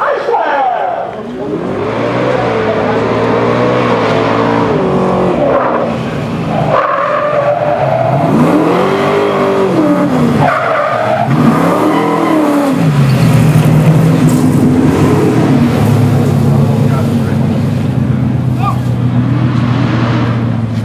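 Engine of a motorized fire-drill race rig revving up and down several times as it accelerates and slows along the track, then running at a steady pitch for the last several seconds.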